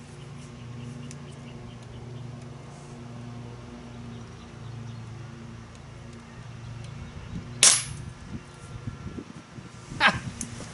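A single sharp shot from a Beeman P17 .177 air pistol, about three-quarters of the way through, over a steady low hum.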